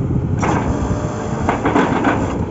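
Truck-mounted borewell drilling rig running: a loud, steady engine drone, with a few short bursts of harsher noise about half a second in and twice near the end.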